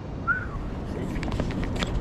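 Wind rumbling on the microphone, with a run of clicks and taps from the camera being handled and carried across sand that starts about a second in. A brief falling whistle-like chirp comes about a third of a second in.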